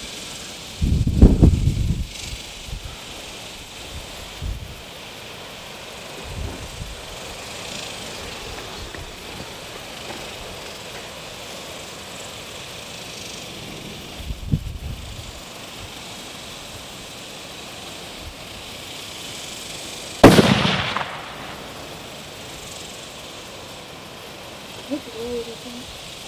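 A single shot from a 6.5 Creedmoor rifle on a Howa 1500 bull-barrelled action, about twenty seconds in: one sharp, loud crack with a short ringing tail. Before it come low rumbling gusts of wind buffeting the microphone, one loud near the start and a weaker one about halfway.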